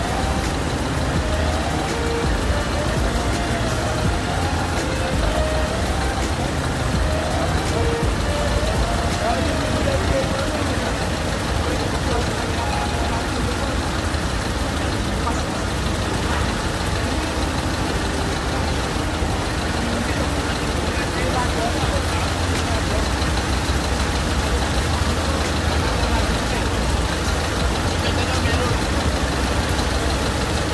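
Fire engines' motors running steadily at a fire scene, a loud low rumble throughout. A wavering tone rises and falls repeatedly during about the first ten seconds.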